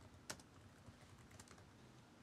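Faint computer keyboard typing: a few scattered keystroke clicks over a near-silent background.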